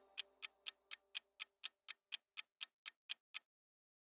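Ticking-clock sound effect of a quiz countdown timer: about fifteen even ticks, roughly four a second, that stop about three and a half seconds in.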